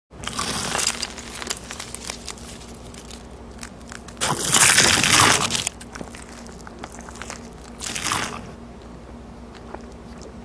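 Close-up crunching of crispy, crumb-coated fried chicken being bitten and chewed: three crunch bursts, the loudest and longest about halfway through, with small crackles in between.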